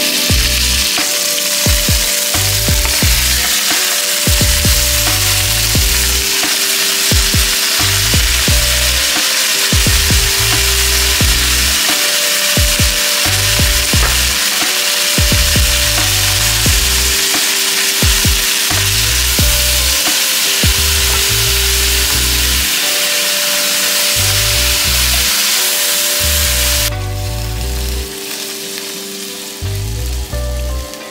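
Chicken thighs and then vegetable scraps sizzling in hot fat in an enameled Dutch oven, with scattered clicks of tongs and stirring against the pot. The sizzle falls away sharply near the end.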